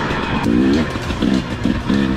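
Dirt bike engine running on a trail ride, mixed with rock-style background music with a chugging rhythm.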